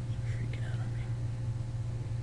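Steady low electrical hum, with a faint, soft voice for a moment in the first second.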